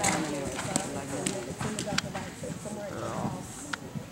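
Indistinct voices talking in the background, with a few sharp, irregular knocks from a cantering horse's hooves.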